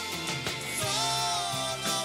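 A live band playing a song: drums keeping the beat under keyboards and a singer's sustained, sliding vocal line.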